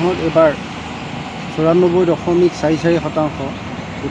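A man's voice speaking in short phrases with a pause in between, over a steady low background noise.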